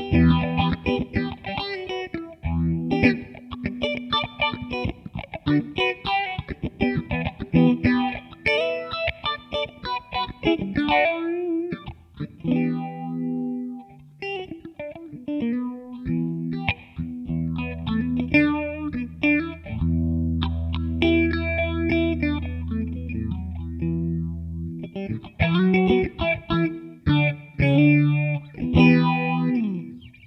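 Electric guitar played through a Digitech RP55 multi-effects pedal on an improvised auto-wah patch: quick, funky choppy strumming and picked notes, with low notes held for several seconds in the middle before the quick playing returns. It cuts off suddenly at the very end.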